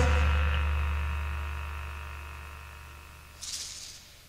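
The final chord of a punk rock song ringing out and fading steadily, a low bass note holding under higher ringing tones, with a short burst of hiss near the end.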